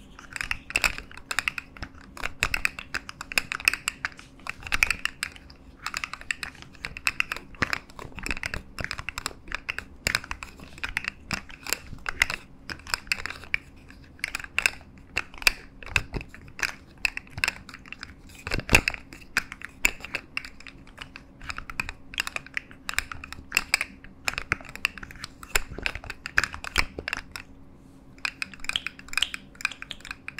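Dense, irregular plastic clicking and clacking from a jointed rainbow fidget slug toy, its segments knocking together as it is flexed and twisted in the hands, with a few short pauses.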